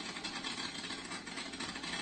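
Top fuel nitro drag motorcycle engine running steadily at the starting line, faint under tape hiss.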